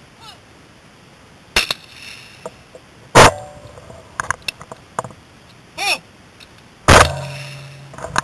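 Two 12-gauge shotgun shots from a Browning Silver semi-automatic, about three and a half seconds apart, each very loud with a ringing tail. Lighter metallic clinks and a shorter sharp sound come between the shots.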